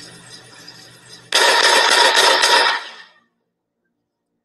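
A rapid volley of several gunshots, starting about a second and a half in and fading out within about two seconds, from footage of a police shooting.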